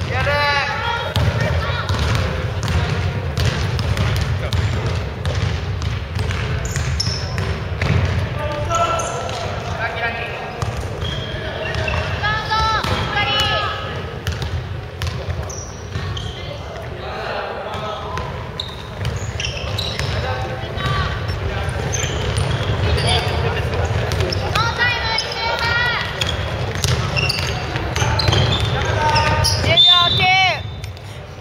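Sounds of a basketball game on a wooden gym floor: a ball bouncing, shoes squeaking on the court and players' voices calling out, heard in a large gymnasium.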